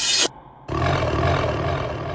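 A hissing sweep that cuts off about a quarter second in. After a brief dip, a low, gritty roar-like growl sits over a steady low drone, as a break in an electronic psytrance track.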